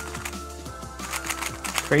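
Gan Megaminx V2 magnetic speed puzzle being turned rapidly, its freshly lubricated plastic faces giving a quick run of light clicks, heard over background music.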